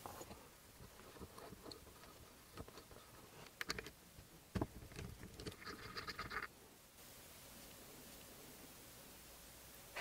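Faint clicks and light scraping of small metal engine parts being handled by hand while a miniature V-twin engine is taken apart, with a few sharper ticks about four to five seconds in; the last few seconds are near silence.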